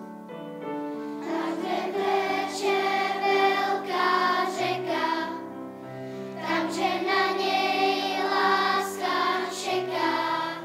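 Children's choir singing a piece in several parts, holding sustained notes, softer for the first second or so and then fuller.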